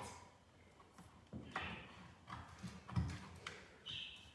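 A few faint taps and knocks as scissors and a stencil are handled against a plastic wheelie bin, the loudest about three seconds in, with a brief high metallic sound from the scissors near the end.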